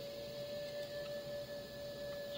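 A single steady ringing tone, held for about two and a half seconds with a fainter higher overtone above it, then stopping.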